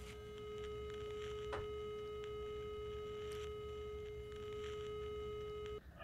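A steady electronic telephone line tone, faint and unchanging, from a picked-up telephone receiver, cutting off suddenly just before the end.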